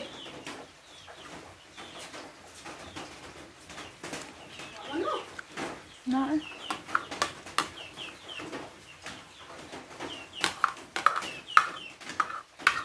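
Chickens clucking with short repeated calls, and a few sharp clicks of a metal spoon against a plate near the end.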